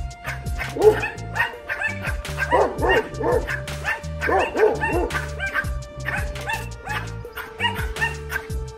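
Pomeranians and a neighbour's dog barking at each other through a fence, in quick volleys of two or three high yaps about every second. Background music with a steady beat runs under the barking.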